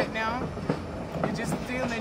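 White Pass & Yukon Route passenger train running along the rails, heard from an open car platform, with a voice speaking briefly at the start.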